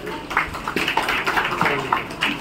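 Scattered hand clapping, an irregular patter of claps from a small gathering.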